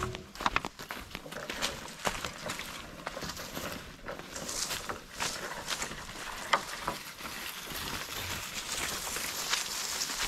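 Footsteps crunching through dry leaves and grass, with rustling undergrowth and scattered sharp crackles at irregular intervals.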